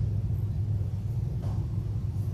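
Steady low background hum filling the meeting room, with a few faint rustles.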